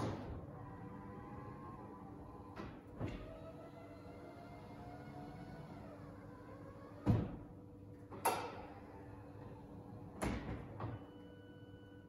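Power-retractable hard top of a 2006 Mazda MX-5 NC folding down: an electric motor whine that rises and falls in pitch, broken by a series of clicks and clunks from the roof mechanism, the loudest clunks about seven and eight seconds in.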